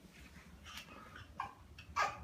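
A few short, faint excited squeals from a toddler, the loudest right at the end.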